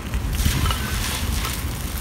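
Strong wind buffeting the microphone with a low rumble, over the dry crunch of a red clay block crumbled in the hand.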